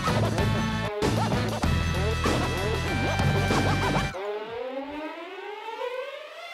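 Hip-hop DJ set played live through the venue PA: a dense beat with heavy bass and choppy samples, briefly cut off about a second in. About four seconds in the beat drops out and a rising pitched sweep takes over.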